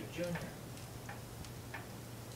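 Steady ticking, about two ticks a second, over a low steady hum, after one short spoken word at the start.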